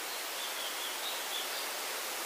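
Steady background hiss, with a few faint, short high chirps in the first half.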